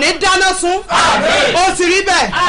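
A woman's loud, impassioned voice crying out in prayer, with a rough, breathy stretch about halfway through.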